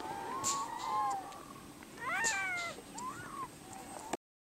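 Harp seal pup in its white coat calling: one long wavering cry, a second that rises and falls about two seconds in, and a short cry near the end.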